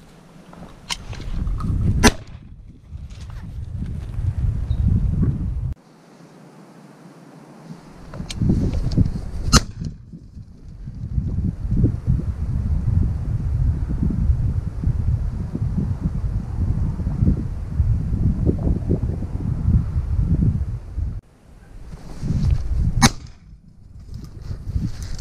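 Wind buffeting the microphone in gusts, with a few sharp cracks through it, the loudest about two seconds in and another near the middle.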